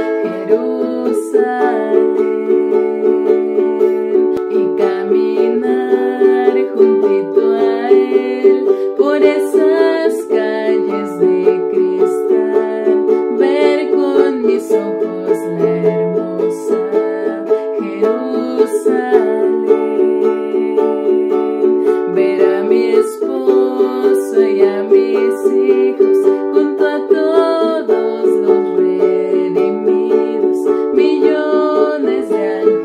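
Ukulele strummed in a steady rhythm, chords changing every few seconds as a song's chord progression is played.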